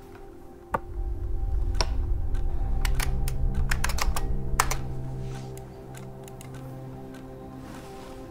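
A game clock's button clicks once about a second in, then a quick run of keystrokes clatters on an older mechanical computer keyboard. Underneath runs film music with a deep low swell that fades after about five seconds.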